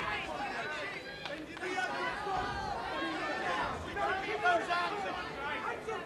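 Boxing crowd at ringside shouting and chattering during the bout, many voices overlapping with no clear words.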